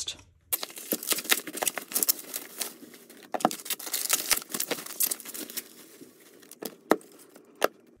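Plastic bubble wrap being pulled off a package and crumpled by hand: a dense run of crinkling and crackling that starts about half a second in, with a few sharper snaps near the end.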